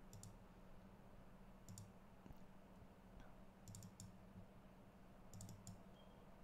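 Faint computer clicks in about five small clusters of two to four, over a low steady hum.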